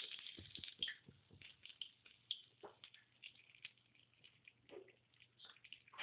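Hot cooking oil in a steel pan faintly crackling and spitting, with scattered small pops throughout.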